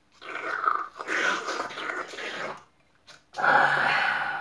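Wine being slurped through drinking straws: two stretches of noisy sucking, the second starting near the end.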